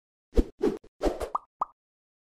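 Logo-animation sound effect: a quick run of about six short pops, several sliding upward in pitch, starting about a third of a second in.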